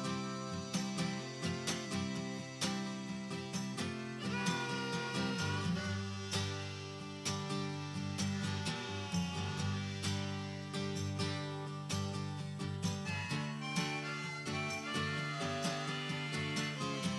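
Background music: plucked string instruments, guitar-like, playing a steady, even rhythm.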